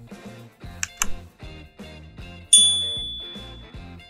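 Background music with a steady beat, overlaid with end-screen sound effects: two quick mouse clicks just under a second in, then a bright bell-like ding at about two and a half seconds that rings out and fades over more than a second.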